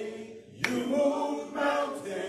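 A men's gospel vocal group singing in harmony, with a short breath about half a second in before the next phrase begins.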